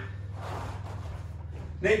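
Faint scuffing of a wrestler's feet moving on a foam wrestling mat, over a steady low hum. A man's voice calls out a name near the end.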